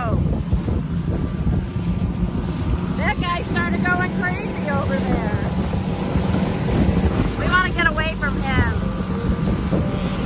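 Boat motor running with a steady low hum, under wind on the microphone and choppy water. Indistinct voices come in twice, a few seconds in and near the end.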